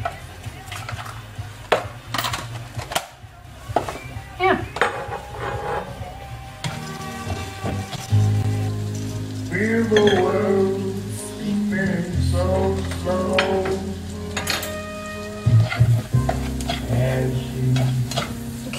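Onions and butter sizzling in a frying pan while being stirred, with clicks and knocks of a utensil against the pan. Music with a steady bass line comes in about six or seven seconds in and runs underneath.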